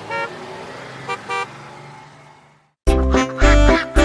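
Two short cartoon bus-horn toots about a second in, as a children's song fades out to silence. About three-quarters of the way through, a new bouncy children's song starts with a strong beat.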